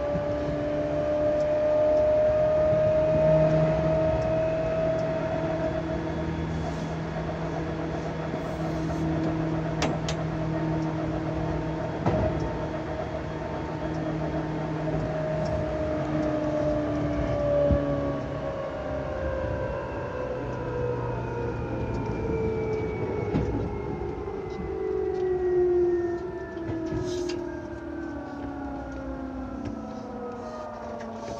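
Running sound heard aboard a Seibu 2000 series electric train (set 2085F): the traction motors and gears whine over the wheel rumble, with a few sharp knocks. For the first part the whine holds its pitch at speed. From about halfway it sinks steadily in pitch as the train slows down.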